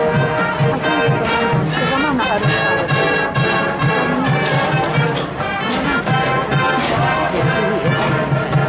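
Marching band brass playing a tune over a steady beat, with crowd chatter underneath.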